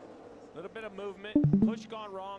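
Quiet speech with two or three brief knocks about one and a half seconds in.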